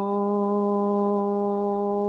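A steady drone held on one low pitch, with a row of overtones, unchanging throughout.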